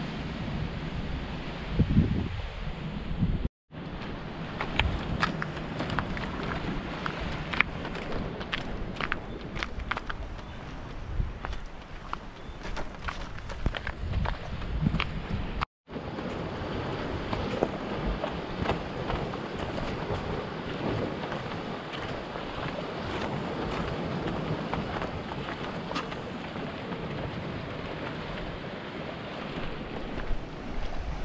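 Wind buffeting the microphone over surf washing against a rocky shoreline, with scattered sharp ticks through the middle stretch. The sound cuts out briefly twice, once a few seconds in and once about halfway.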